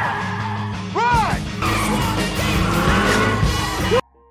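Tires of a Mercedes sedan squealing and skidding as it swerves, over action music, with a squeal that rises and falls about a second in. The sound cuts off suddenly at the end.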